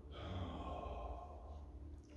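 A man's long audible breath, like a sigh, lasting about a second and a half and picked up close by his microphone, over a faint steady hum.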